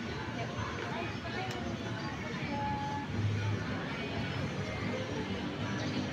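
Steady background hubbub of a busy play area: distant indistinct voices and faint music over ambient noise.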